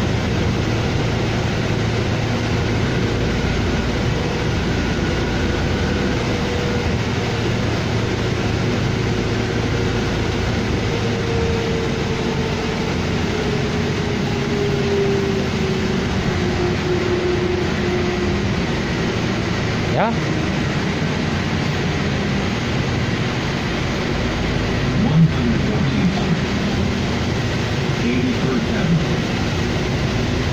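Cabin noise of a 2007 New Flyer D40LFR diesel transit bus under way: steady engine and road rumble, with a whine that slowly falls in pitch around the middle. A sharp click about two-thirds of the way in, and a few light knocks near the end.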